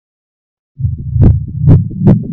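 Silence for most of the first second, then a low electronic drone with two sharp hits about half a second apart. This is the opening of the Pepsi logo animation's sound, run through pitch-shifting 'G Major' audio effects.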